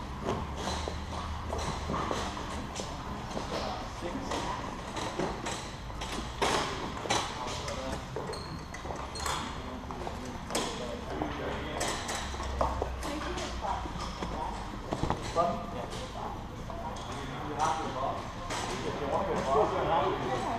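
Indistinct chatter of people in a large, echoing hall, with frequent sharp clicks and knocks close by and a low hum that comes and goes.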